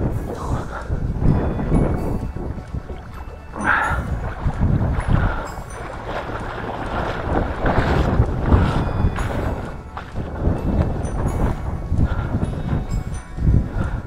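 Wind buffeting the microphone over irregular water sloshing and splashing as the camera moves low across the water to a grassy bank.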